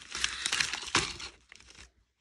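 Paper seed packets and plastic packaging rustling and crinkling as a hand sorts through a bin of them. The rustling is loudest in the first second and dies away toward the end.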